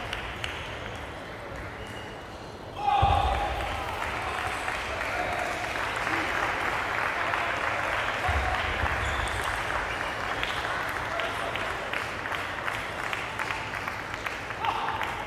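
Applause with shouting voices in a large hall, breaking out suddenly about three seconds in at the end of a table tennis rally and going on for several seconds before easing off.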